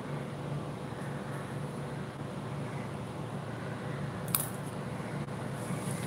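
Steady low hum and hiss of background noise, with one sharp click about four seconds in.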